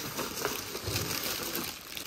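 A paper shopping bag and the plastic wrapping inside it rustle and crinkle as hands reach in and pull out the contents, with small irregular crackles.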